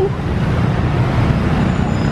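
Steady road traffic noise from a busy city street: a continuous low rumble with no single vehicle standing out.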